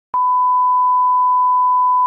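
A steady test-tone beep, the single unbroken tone played over TV colour bars, starting with a click just after the picture cuts to the bars.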